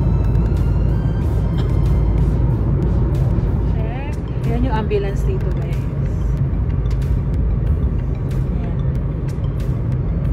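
Steady low rumble of a car driving at highway speed, heard from inside the cabin, with music playing underneath and a voice briefly about four seconds in.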